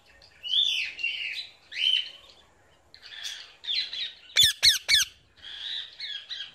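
Parrot squawking in a run of repeated harsh calls, with three quick sharp calls about four and a half seconds in.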